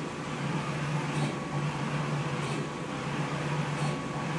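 Brother GTX direct-to-garment printer running mid-print: a steady low hum, with a faint swish swelling about every second and a bit.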